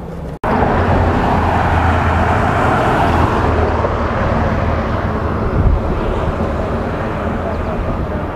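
Steady roadside noise of passing traffic and rushing air, with a low rumble underneath. It starts abruptly about half a second in.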